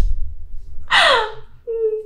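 A woman's mock-anguished vocal reaction to a hard question: a breathy gasping cry falling in pitch about a second in, then a held moaning note. A sharp knock sounds at the very start.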